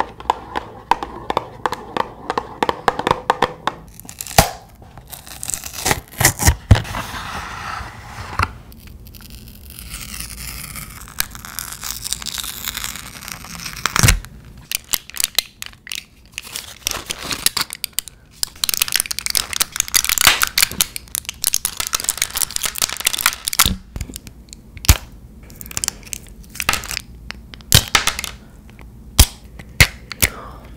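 Close-miked handling of medicine packaging: a cardboard box and its paper leaflet rustled and tapped, then foil blister packs crinkled and tablets pushed through the foil, with many sharp cracks and crackles.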